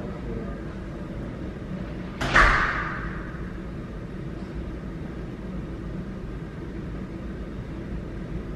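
A single loud bang about two seconds in, dying away within half a second, over a steady low rumble.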